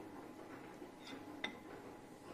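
A metal spoon ticking lightly against a ceramic bowl, faintly about a second in and once more, sharper, about a second and a half in, over faint room noise.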